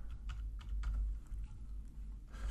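Computer keyboard typing: a quick run of quiet keystrokes, one key pressed over and over to type a line of equals signs, over a faint low hum.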